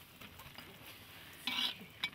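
Kitchenware sounds of food being served from a large metal wok into a porcelain bowl: faint stirring and handling, with one brief louder clatter about one and a half seconds in.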